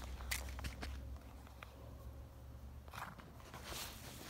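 Faint footsteps and rustling through grass, a few soft crunches near the start and again about three seconds in.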